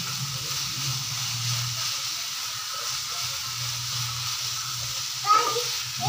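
Shredded vegetables (carrot, potato and onion) frying in oil in a nonstick wok, with a steady sizzle as a plastic spatula stirs and turns them. A low steady hum runs underneath.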